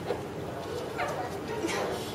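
Faint background voices in a lull in the talk: brief, high-pitched calls about a second in and again near the end, over a low room hum.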